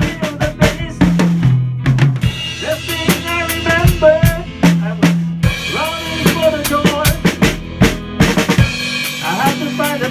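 Live pop-rock band playing: a drum kit with regular bass-drum and snare strokes, under an electric guitar carrying a bending melodic line.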